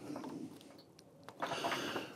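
Faint handling noises: a couple of small clicks about a second in, then rustling as solar PV cables and a plastic DC isolator box are moved near the end.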